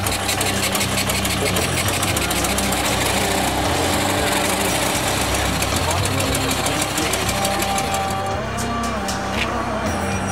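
Air-cooled motorcycle engine running steadily, a fast, even stream of firing pulses.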